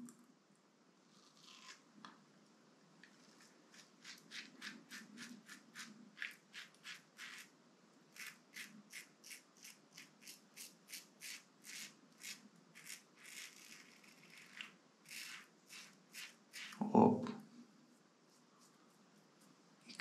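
Rockwell 6C zinc-alloy safety razor scraping through stubble and lather in quick short strokes, about three a second, with the slightly hollow sound of its plated zamak head. A short, louder, low sound comes near the end.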